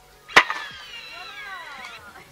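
A sharp snap as the TongLi K6 robot tank's launcher fires a ping pong ball, followed by a whine that falls steadily in pitch for about a second and a half, typical of the launcher's flywheel motor spinning down.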